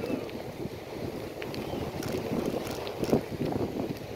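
Wind buffeting a bicycle-mounted camera's microphone as the bike rolls over beach sand: a steady low rumble with a few faint clicks.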